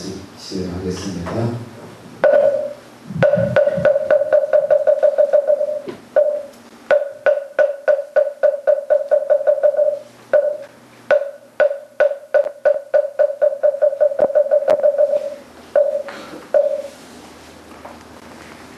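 A wooden moktak (Buddhist wooden fish) struck in long fast rolls, several clear, evenly pitched knocks a second, with single strokes between the runs. It marks the start and close of a moment of silent tribute.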